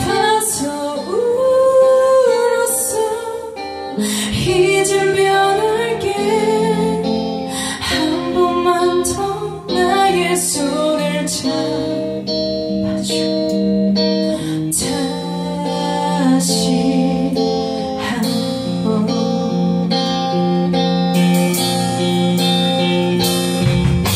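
A live band plays a song through a club PA: electric guitars over bass guitar and a drum kit, with a woman singing.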